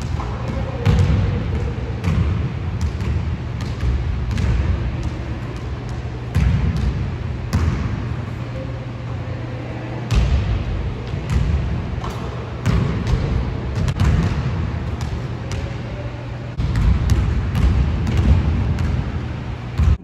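Basketball bouncing on a wooden gym floor as it is dribbled, irregular thuds about once a second, over a steady low hum.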